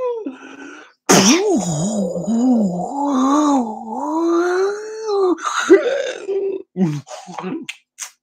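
A man's wordless vocal improvisation. After a brief sound at the start, a long sung line begins about a second in, its pitch sliding and wavering for around four seconds. Near the end it breaks into a run of short, broken vocal sounds.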